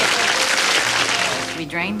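Audience applause that dies away about a second and a half in, as a woman begins to speak.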